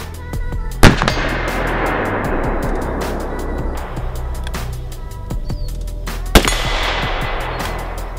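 Two large-calibre handgun shots about five and a half seconds apart, each a sharp crack trailing off in a long echo, over background music with a steady beat.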